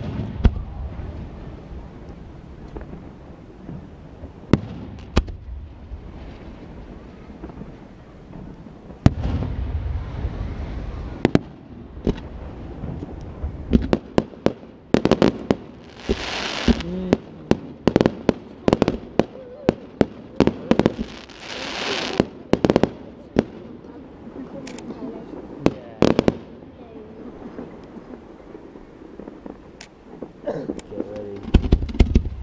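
Fireworks display: aerial shells bursting with sharp bangs, few at first and then a dense run with crackling through the second half. Two loud spells of hissing come a little past the middle.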